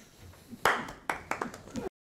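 Hands clapping, a short burst of applause beginning about half a second in, with a few separate claps, cut off abruptly near the end.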